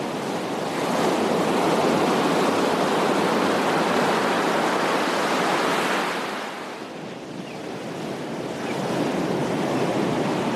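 Small ocean waves breaking and washing up a beach. A long wash of surf eases off about six seconds in, then the next wave builds near the end.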